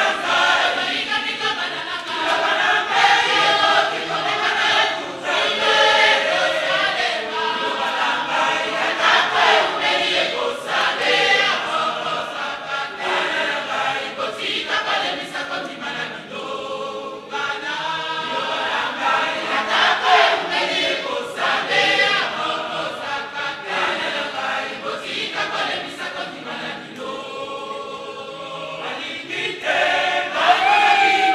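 A women's church choir singing together in phrases, many voices at once.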